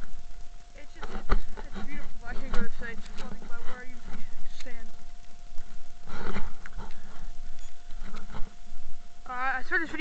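A man's voice talking indistinctly in short bursts, with a couple of knocks from the camera being handled. A thin steady high tone runs under it all.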